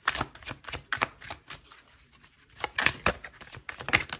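Oracle card deck being shuffled by hand, the cards flicking and slapping against each other in quick irregular clusters with short pauses between them.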